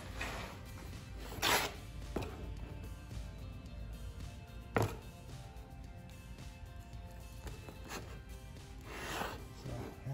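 Background music, with a few brief handling noises as the aluminium valve body of a CVT transmission is turned over on cardboard.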